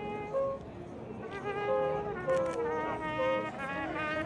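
Marching-band brass instruments, trumpets among them, playing held notes in short phrases, several instruments sounding at once with the pitch moving in steps.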